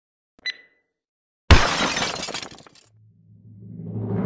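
A short electronic beep, then a loud sudden crash of shattering glass, an edited sound effect that rattles away over about a second. Near the end a low hum starts and music swells up.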